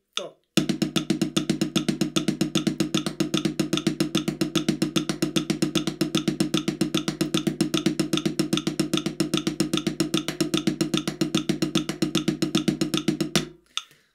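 Drumsticks on a practice pad playing an unbroken run of eighth-note triplets with the sticking right-left-right, right-left-right, at 150 beats per minute (about seven and a half strokes a second). The strokes start about half a second in and stop shortly before the end.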